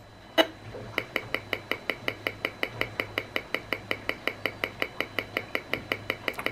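Safe and Sound Pro II RF meter's audio output clicking in a steady rhythm, about six clicks a second, as it picks up pulses of Bluetooth microwave signal from a computer whose Bluetooth has just been switched on. A single click comes about half a second before the rhythm starts.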